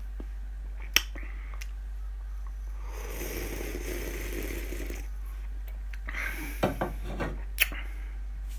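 Drinking a carbonated energy drink (Red Bull) from an aluminium can: about two seconds of sipping and swallowing midway, with a few light knocks of the can before and after, over a steady low hum.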